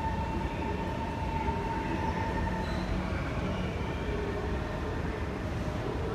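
Kawasaki Heavy Industries C151 metro train running along the platform with a low rumble. A steady whine from the train carries through the first couple of seconds and fades out.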